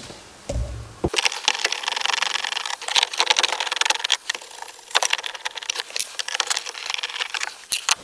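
A wrench undoing the M8 nuts that hold a Lada Niva's instrument cluster: a short low thump, then rapid, uneven clicking from about a second in.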